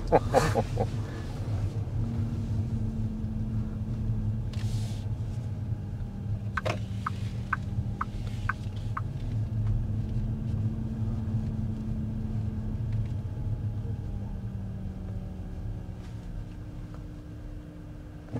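Road and tyre noise heard inside the cabin of an XPeng G6 electric SUV moving slowly in traffic: a steady low rumble with a faint steady hum over it. Midway, a run of about five short, high ticks comes about half a second apart.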